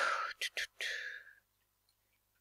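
A man whispering under his breath, breathy and unvoiced, broken by two short clicks; it stops about a second and a half in, leaving silence.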